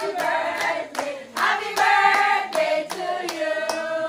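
A group of women singing together while clapping along in a steady rhythm, about two to three claps a second.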